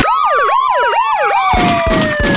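A siren-style sound effect in a DJ mix: a tone swooping up and down about three times a second over a long, slowly falling tone. The drum beat comes back in about one and a half seconds in.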